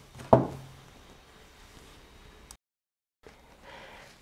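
A short, wordless voice sound just after the start, then faint room hiss. About two and a half seconds in, a click is followed by a moment of dead digital silence from an edit cut, and faint noise comes back after it.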